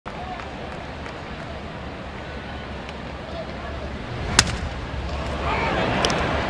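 Ballpark crowd murmur, then a single sharp crack of a bat hitting a pitched ball into a ground ball about four and a half seconds in. Crowd noise rises after it.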